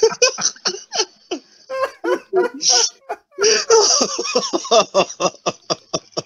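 A man laughing hard, in rapid, breathy bursts: two long bouts with a short pause about three seconds in.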